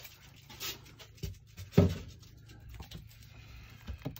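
Quiet handling noises from a foam insulation board and a tape measure being moved about, with faint rubbing and one short thump about halfway through.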